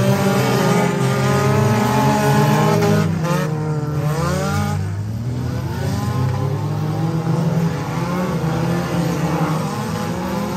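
Several figure-8 race cars' engines running hard at once, their notes rising and falling as the cars accelerate and back off.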